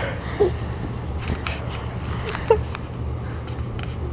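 A steady low hum with a few faint light knocks, and two short vocal sounds, one about half a second in and one about two and a half seconds in.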